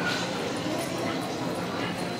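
Audience crowd noise in a large hall: a steady wash of many voices murmuring, with faint scattered calls.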